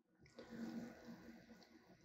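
Near silence, broken by a faint, brief rushing noise about half a second in that fades out before the second mark.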